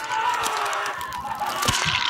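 Horror-film sound design under opening credits: thin, wavering tones with scattered crackling clicks.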